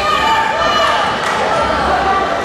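Several voices shouting and calling out in a large, echoing sports hall, with dull thumps underneath.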